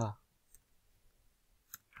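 A few faint, isolated clicks from a computer keyboard and mouse during code editing, the two clearest close together near the end, after a man's spoken word trails off at the very start.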